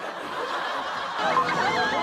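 Several people laughing and snickering, the laughter growing louder about halfway through.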